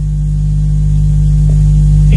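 Loud, steady electrical mains hum: a low buzz made of several evenly spaced tones, creeping slightly louder.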